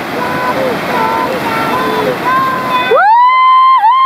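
Whitewater rushing through a river rapid, with high-pitched voices calling over it. About three seconds in the river noise cuts out abruptly and a loud siren-like tone takes over, rising, holding with a brief dip, then falling away.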